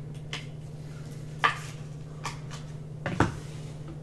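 Panini Spectra basketball trading cards being handled at a stack: about five short, sharp clicks at uneven intervals about a second apart, over a steady low hum.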